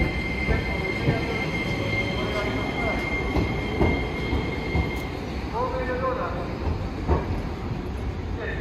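Sapporo City Tram Type 1100 "Sirius" low-floor tram passing and pulling away along street track, with a steady high-pitched whine that stops about five seconds in, over the rumble of the tram and street.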